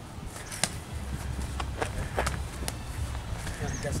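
Gloved punches and kicks tapping on focus mitts during light sparring: several soft, irregularly spaced slaps over a low steady rumble.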